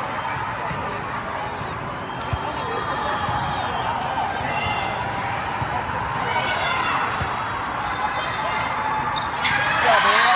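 Volleyball rally in a large hall: a few sharp hits of the ball over a steady background of crowd chatter, with shouting rising near the end.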